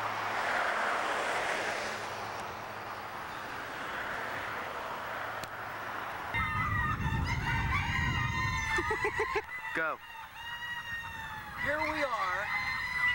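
A flock of chickens clucking and calling, many birds at once, starting about halfway through after a few seconds of rushing background noise.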